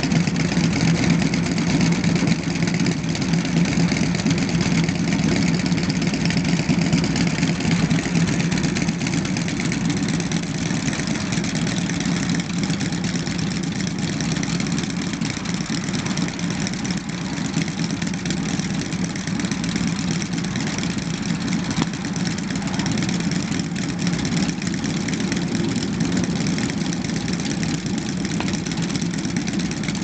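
Several motorcycles idling together with a steady low rumble, a little louder in the first several seconds.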